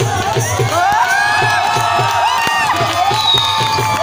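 Dhol drum beating a steady bhangra rhythm, about four strokes a second, while dancers and crowd shout and cheer over it with long rising-and-falling whoops.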